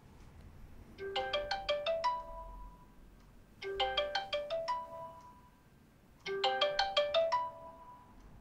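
Mobile phone ringtone: a quick rising run of chiming notes ending on a held higher note, played three times about two and a half seconds apart.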